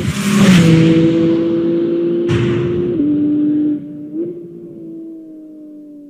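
Porsche sports car engine held at steady high revs. Its pitch steps down about three seconds in and climbs again a second later, and the sound falls much quieter just before that climb, with a single sharp tick about two seconds in.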